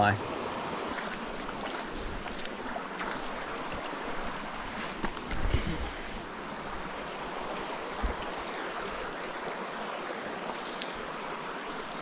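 Creek water running steadily over rocks, with a couple of brief knocks around the middle of the clip.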